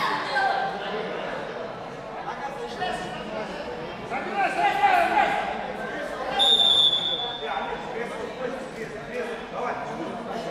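A referee's whistle blows one short, shrill blast a little past halfway, stopping the wrestlers' ground action. Spectators' voices and shouts fill the hall throughout.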